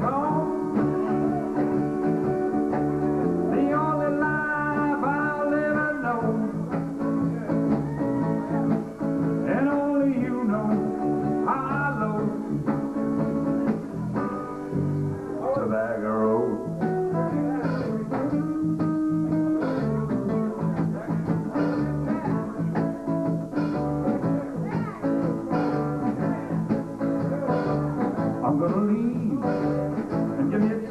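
Live blues-rock band playing an instrumental break: harmonica lines with bent notes over strummed acoustic guitar and electric bass.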